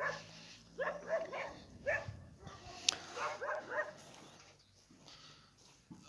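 Dogs barking, a run of short barks in the first four seconds or so. These are several dogs kept chained by a neighbour that bark on and off without stopping.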